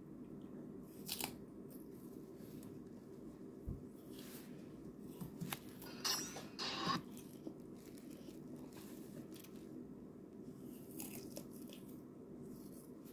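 Faint rustling and scraping of a hand and forearm moving over notebook paper close to the microphone, loudest in a burst around six to seven seconds in. A faint steady hum runs underneath.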